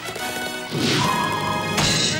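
Orchestral cartoon score with a slapstick crash sound effect near the end, as the cartoon woodpecker slams into the ship's mast.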